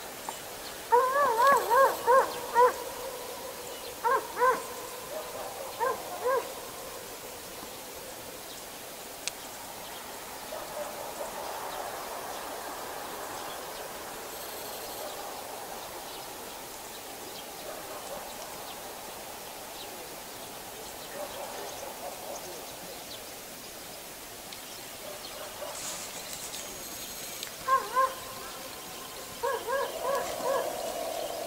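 An animal calling: clusters of short, pitched, wavering calls over a steady low background. One cluster comes about a second in, with a few more calls around four and six seconds, and another cluster near the end.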